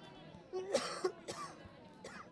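Two short, harsh vocal bursts from a person close by. The first starts about half a second in and lasts about half a second; the second, shorter one comes just after a second. Faint background noise from the crowd and field runs under them.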